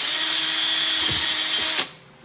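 Makita cordless drill running at steady speed as it bores a small test hole through the closed end of a flexible rubber pipe cap, stopping suddenly near the end.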